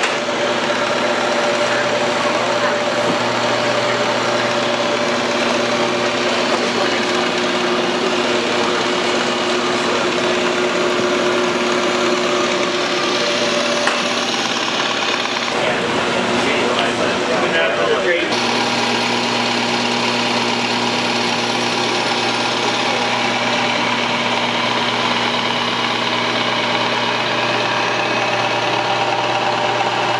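Microgreen harvesting machine running: a steady motor hum from its blade drive and conveyor, dropping away for a few seconds about halfway through and then resuming.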